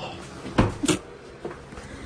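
Two sharp knocks about a third of a second apart over a low steady hum.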